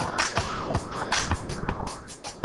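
Korg M3 workstation playing an R&B groove from its sequencer: a looped drum-machine beat with bass and electric piano, the drum hits sharp and quick.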